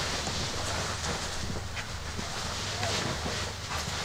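Bedding and duvet rustling softly as a person shifts and sits up in bed, over a steady low hum of room tone.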